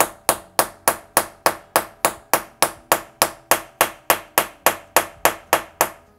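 A small hammer tapping a new bushing into a classic Mini Cooper S rocker arm held in a fixture, driving it in ahead of reaming it in place. It is a steady run of light, evenly spaced metal taps, about three a second, each ringing briefly.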